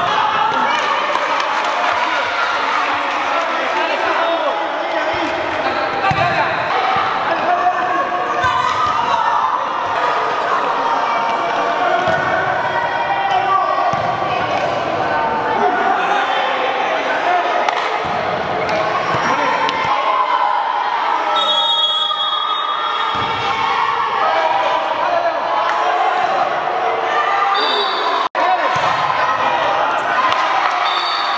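Echoing hall noise of a kids' indoor futsal game: spectators and players shouting, with the ball repeatedly thumping off feet and the hard floor. A short, high whistle sounds about two-thirds of the way in.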